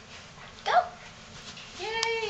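A young child's voice making two short high-pitched wordless sounds: a brief one about two-thirds of a second in, and a longer one that rises and falls near the end.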